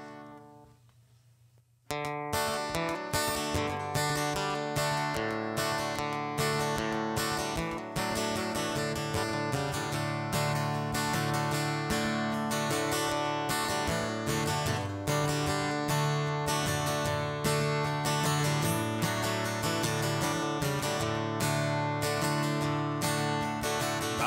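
Acoustic guitar starting the instrumental intro of a country-folk song about two seconds in, after a near-silent pause, then played in a steady, even rhythm of strummed strokes.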